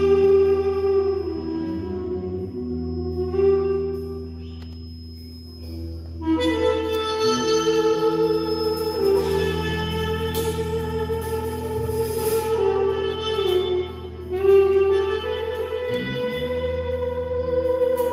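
Live ensemble music led by a mey, the Turkish double-reed pipe, playing long held melody notes over a steady low bass. The sound thins out about four seconds in, comes back fuller about six seconds in, and dips briefly near fourteen seconds.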